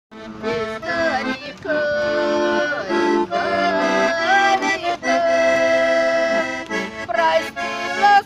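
Garmon, a Russian button accordion, playing a folk tune: a melody over sustained chords, with one long held chord in the middle, as the introduction to a song.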